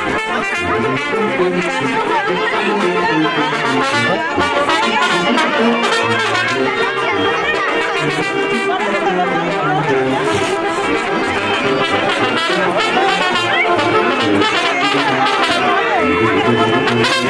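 Brass band music playing continuously, with the chatter of a crowd mixed in.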